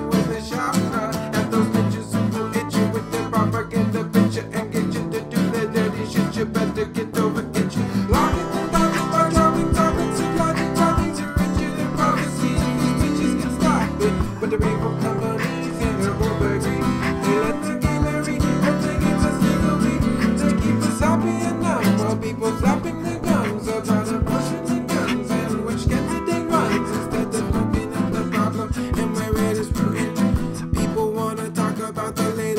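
Two acoustic guitars playing an instrumental passage of an acoustic hip hop fusion song, with a percussive beat of sharp taps through the middle of the passage.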